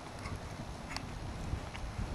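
A horse's hoofbeats during a dressage test: soft, irregular low thuds, with a couple of faint sharp clicks.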